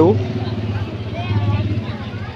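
Motorcycle engines idling with a steady low drone, amid the chatter of a dense crowd.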